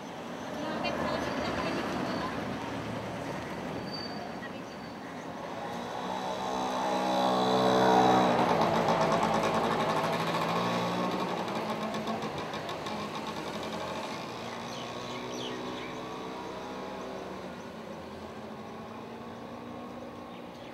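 A motor vehicle driving past on the street. Its engine grows louder to a peak about eight seconds in, then drops in pitch and fades as it goes by.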